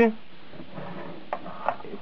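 Faint handling noise of a Karcher pressure washer's high-pressure hose being worked into its plastic trigger gun, with two light knocks about a second and a half in.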